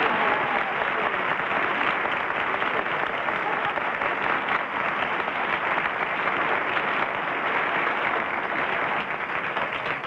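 Studio audience applauding steadily, easing off a little near the end.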